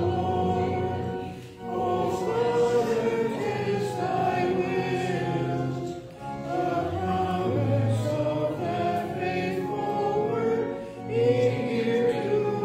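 A group of voices singing a hymn, with short breaks between phrases about every five seconds.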